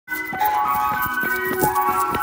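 Ice cream van chimes playing a tune: a run of steady electronic notes that step from pitch to pitch.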